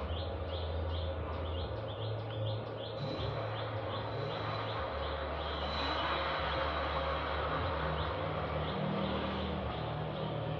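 Electric bicycle's rear BLDC hub motor running on a single 12 V battery through a step-up inverter, a steady low hum that shifts pitch up and down a few times.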